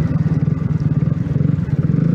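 Yamaha MT-125's single-cylinder four-stroke engine running steadily under way, a fast, even pulsing beat heard from the pillion seat.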